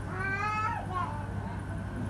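A single short high-pitched cry, about half a second long and slightly falling, over a low steady hum.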